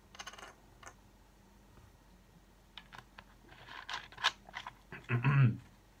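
A man swallowing a drink, then a plastic soda bottle and a glass being handled with small clicks and crackles. Near the end comes a short throat-clearing grunt, the loudest sound.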